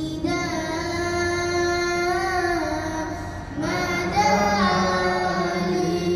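A high, young-sounding voice singing an Arabic nasheed in long held notes. There are two phrases, with a short break about three and a half seconds in.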